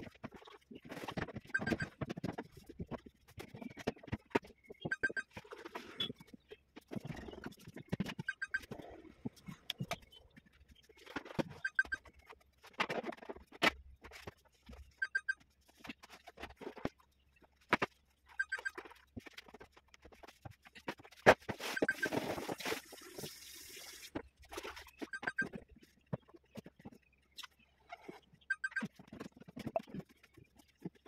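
A damp microfiber cloth wiping the plastic interior of an LG refrigerator, giving irregular rubbing strokes with short squeaks every couple of seconds. A longer rushing noise comes in about 22 seconds in.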